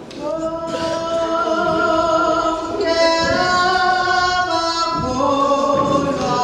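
Zionist church choir of men and women singing a gospel hymn in long, held chords, coming in just after the start.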